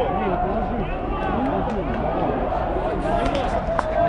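Several men's voices talking over one another, with a single sharp click near the end.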